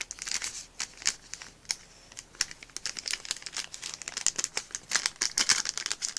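Crinkling and tearing of a small blind-bag packet as it is handled and opened by hand, a dense run of irregular crackles that thickens about three seconds in and again near the end.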